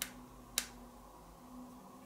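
Two short sharp clicks about half a second apart, as the tactile push-button switches on a Bluetooth speaker's exposed circuit board are pressed by a finger.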